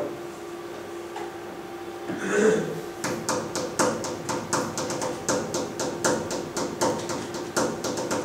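Rhythmic tapping on a hard surface, starting about three seconds in at roughly four taps a second with uneven spacing and accents: one repeated sound with its timing varied, as a demonstration of rhythm. A brief voice sound comes just before the tapping starts.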